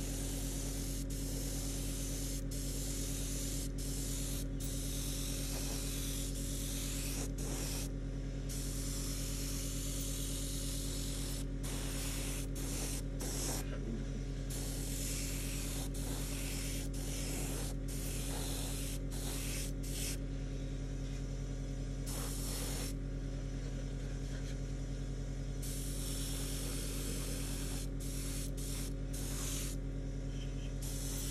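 Airbrush spraying Reefer White acrylic paint onto a plastic model: a hiss of air and paint that stops and starts many times, with a few longer pauses, over a steady low hum.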